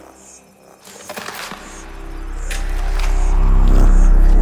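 Electronic music: scattered glitchy clicks and crackles, then a deep bass swell building steadily louder from about halfway through.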